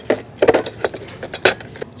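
Loose metal oscillating multi-tool blades clinking against one another and the hard plastic carry case as a hand picks through them, in a string of irregular light clicks and rustles.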